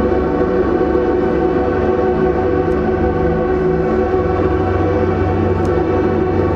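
Live ambient music: a dense drone of layered, sustained tones from electric guitar run through effects pedals and electronics, steady in level with no beat.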